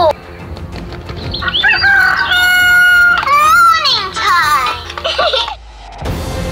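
A long, high crowing cry shaped like a rooster's crow. It climbs through a few short notes about a second and a half in, holds one high note for about a second, then bends and falls away.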